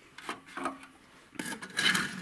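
The neck plug of a liquid-nitrogen semen flask is being handled and slid back into the flask's neck. There are a few light knocks, then a louder rubbing scrape in the last half-second.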